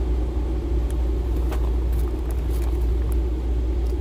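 Steady low rumble of store background noise, with a few faint crinkles and clicks as plastic-wrapped soap bars are handled.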